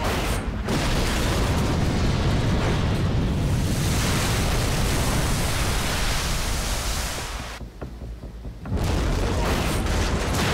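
A Mark 48 torpedo exploding beneath a destroyer's hull: a loud, long blast. It dies down briefly near the end before a second loud blast starts.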